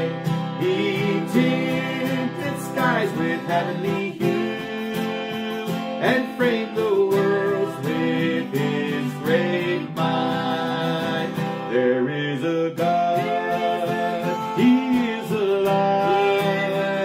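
A man and a woman singing a hymn together over a strummed acoustic guitar.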